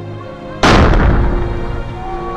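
A house blown up with an explosive charge: one loud blast about half a second in, its rumble dying away over the next second, over steady background music.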